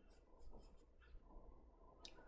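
Very faint scratching of a pencil on drawing paper: a few short strokes.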